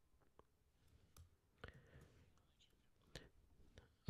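Near silence: faint room tone with two faint short clicks, about one and a half and three seconds in.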